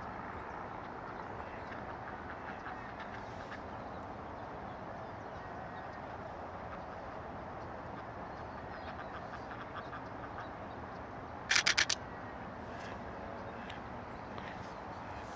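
Nikon Z6 camera's shutter firing a rapid burst of clicks lasting about half a second, near the end, over a steady outdoor background hiss.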